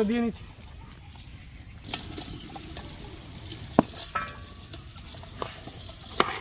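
Chicken frying in an aluminium pot, a steady low sizzle with scattered small clicks and one sharp knock about four seconds in.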